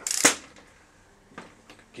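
A short clatter of clicks and rustle lasting about half a second, then quiet with one faint click, as a wrench snugs down the flywheel nut on a Raket 85cc kart engine.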